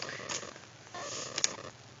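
Faint handling noise of a canvas handbag being moved about, with two light clicks, one about a third of a second in and one about a second and a half in.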